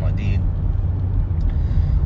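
Steady low rumble of a car driving along a paved road, heard from inside the car. A reciting voice trails off in the first half-second.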